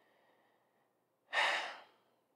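A woman's single short, audible breath about a second and a half in, after a moment of near silence.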